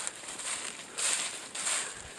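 Footsteps crunching on a trail covered in dry fallen leaves, a few short crunches spaced about half a second apart.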